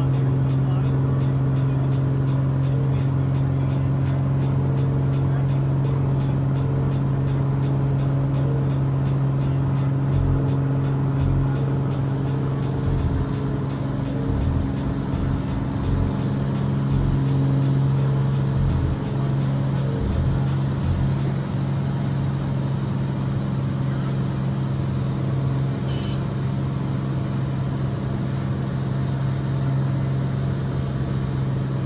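Piston engine and propeller of a single-engine light aircraft at full power, heard from inside the cockpit: a steady, unchanging drone through the takeoff roll and into the climb.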